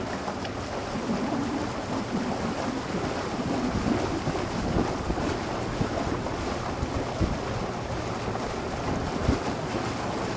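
Wind buffeting the microphone over open water: a steady rushing noise with occasional low gusts, and water sounds beneath it.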